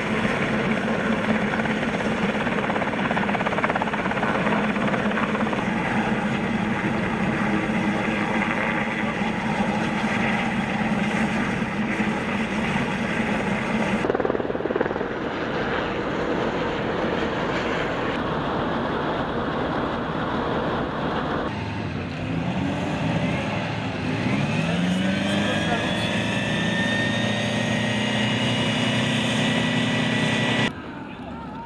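SH-3H Sea King helicopter hovering: steady rotor and turbine noise with a low hum. After abrupt cuts, an engine's pitch climbs over a couple of seconds near the end and then holds steady.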